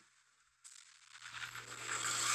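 Near silence for about a second, then a hissing rush fades in and grows louder: the animated episode's sound effect for the fire and smoke filling the screen.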